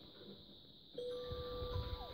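A single steady held tone begins about a second in and carries on unchanged, with faint low rumbling under it.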